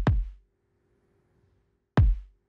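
Electronic kick drum sample hitting once at the start, a sharp click-like attack with a deep falling boom that dies away within about half a second, then hitting again right at the end. The kick runs through a hard-knee compressor at a 10:1 ratio with its threshold set around −21 to −28 dB, the range where the compression starts to squeeze the kick's sustain.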